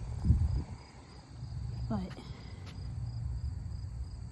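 Insects in weedy summer grass making a steady, high-pitched drone, over a low rumble, with one thump just after the start.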